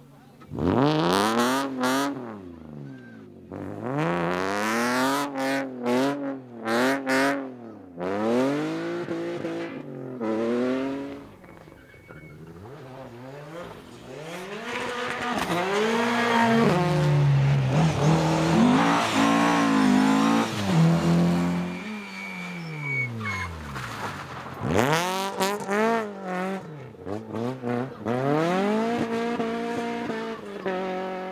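Rally cars driven hard past at close range one after another, engines revving up and dropping sharply again and again through gear changes, with sharp pops between revs in the first few seconds. The loudest stretch is a long pass in the middle.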